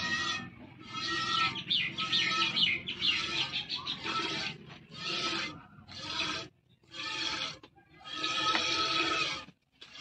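A cow being milked by hand into a steel pot: squirts of milk hiss into the pot in quick repeated spurts, with short breaks between them.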